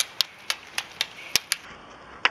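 Ski pole tips striking asphalt as two roller skiers skate uphill, about seven sharp clicks in two seconds, over a steady rolling hiss of roller-ski wheels on the road.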